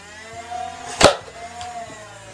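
Nerf Stryfe's battery-powered flywheel motors whining as they spin up, with a single dart fired about a second in as a sharp crack. The whine dips at the shot, picks up again, then falls away near the end as the motors wind down.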